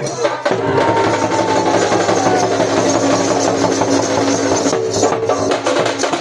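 Live folk dance music: a barrel drum beaten in a continuous rhythm under long held melodic notes.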